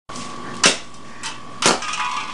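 Electrical arcing from a pop can wired to 110-volt household AC: three sharp snapping cracks, the loudest near the end.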